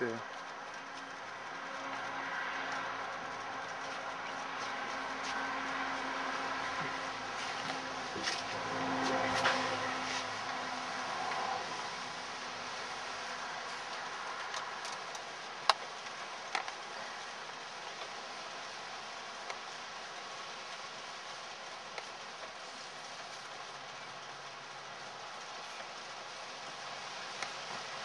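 Wind noise over an outdoor microphone, swelling for about ten seconds near the start and then easing, while a homemade Savonius vertical-axis wind turbine with 4-inch PVC pipe blades spins at about three turns a second. A couple of sharp clicks come about halfway through.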